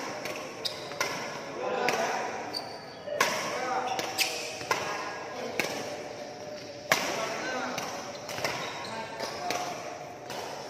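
Badminton rackets striking a shuttlecock in a fast drive-and-smash rally: about a dozen sharp string cracks, roughly one or two a second, each ringing on in the large hall. The loudest hit comes about seven seconds in.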